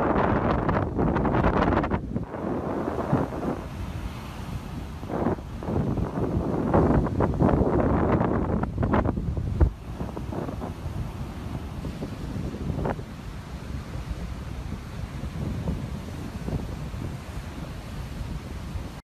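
Strong storm wind gusting and buffeting the phone's microphone, with breaking surf underneath. The gusts are heaviest in the first half, with one sharp knock about ten seconds in, then ease to a steadier rush.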